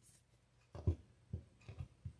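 Tarot cards and a hand knocking softly against a tabletop as cards are drawn and set down, about four light taps in the second half.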